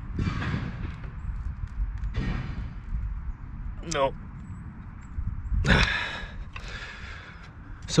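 A man's heavy breaths and exhales of effort, several in a row, as he strains on a wrench against a rusted, seized bolt that will not turn.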